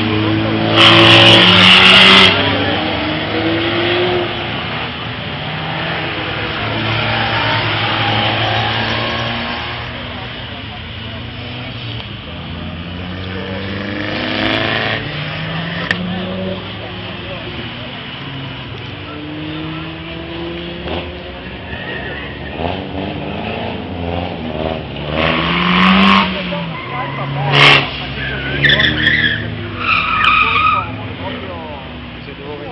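Small hatchback cars' engines revving up and down as they are driven hard through tight corners. Bursts of tyre squeal come about a second in, midway and again near the end, the first being the loudest.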